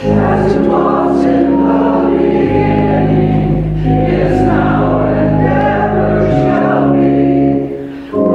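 Church congregation singing a hymn to organ accompaniment, with held notes and a short break between phrases near the end.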